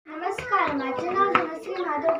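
A girl's voice speaking, in short phrases.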